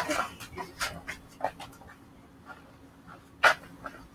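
Breathless panting and gasping laughter from boys winded by play-wrestling: a run of short, quick breaths that fade out, then one louder gasp near the end.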